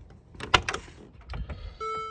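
Mercedes-Benz G63 driver's door being unlatched and opened, with a few sharp latch clicks about half a second in. A short steady electronic beep follows near the end.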